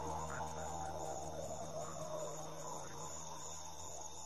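Faint, steady night ambience of insects chirring in high, even tones over a low hum that fades out about halfway through.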